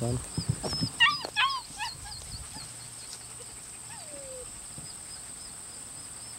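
German Shepherd puppy whimpering while held: a few quick, high-pitched whines about a second in, then a single falling whine near the middle.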